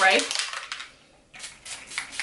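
Pump spray bottle of Joico Hair Shake, a liquid-to-powder texturizing spray, spritzed onto hair: about three short spritzes in quick succession in the second half.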